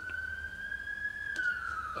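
A wailing siren, one pitched tone climbing slowly and then starting to fall past the middle. A faint click comes soon after the turn.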